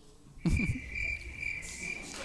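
Cricket-chirping sound effect, a steady high chirring that starts about half a second in, with a brief low sound as it begins: the comedy gag for a joke met with silence.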